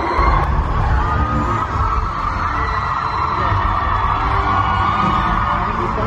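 Music with a heavy, throbbing bass.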